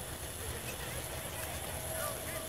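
Faint distant voices of players over a steady low outdoor rumble, with no loud shout or impact.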